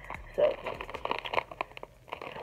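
Crinkling of a foil-lined candy packet being handled, a scatter of small crackly ticks that thin out near the end.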